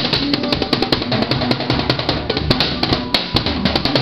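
Drum kit played in a band: rapid drum and cymbal hits over steady pitched instruments.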